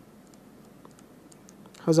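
Faint, scattered clicks and taps of a stylus on a pen tablet during handwriting, with a man's speech starting near the end.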